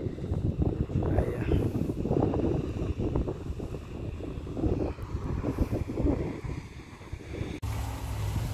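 Wind buffeting the microphone in uneven low rumbles, with a steadier low hum coming in near the end.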